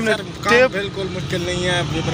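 Men's voices talking, with no other sound standing out.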